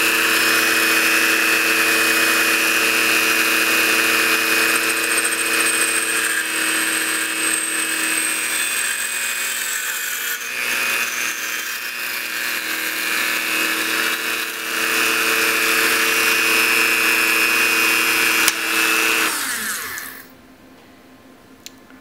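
A Dremel rotary tool's abrasive cutoff wheel grinding through a steel rod turning in a Sherline mini lathe, with both motors running at a steady pitch. Both wind down and stop about two seconds before the end.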